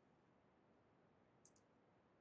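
Near silence with one faint, short click about a second and a half in.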